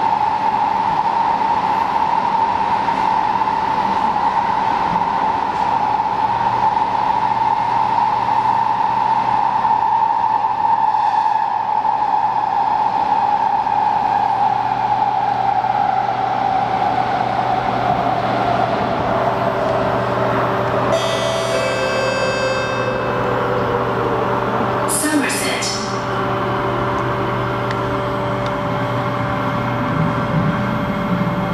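Kawasaki C751B metro train heard from inside the carriage, its traction motors giving a steady whine over the rolling rumble as it runs through the tunnel. Partway through, the whine falls steadily in pitch as the train brakes into the station, and a few brief high squeals and hisses come as it stops.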